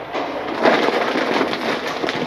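Blue sheet-metal door rattling and scraping as it is pushed open.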